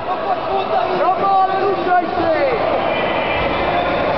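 Several voices shouting and calling over one another from spectators and coaches at a grappling match, over a general murmur of the crowd.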